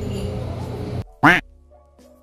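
Restaurant room noise with background music cuts off abruptly about a second in. It gives way to a single short, loud comic sound effect whose pitch swoops up and down, leaving a faint fading tone.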